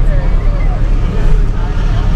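Steady low engine and road rumble inside a tow truck's cab as it creeps through slow traffic, with faint, indistinct voices over it.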